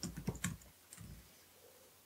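Laptop keyboard typing: a quick run of keystrokes that stops about half a second in, followed by a few faint taps around one second in.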